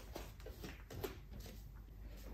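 Fabric rustling with light knocks and shuffles as a person sits down on a sofa.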